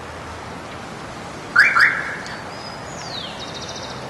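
Birds calling over a steady outdoor hiss: two loud, short calls in quick succession about one and a half seconds in, then a thin falling whistle and a fast high trill near the end.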